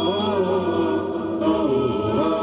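Voices chanting a slow, sustained melody with no drums or clicks, as a vocal intro theme. The high end thins out briefly a little past the middle.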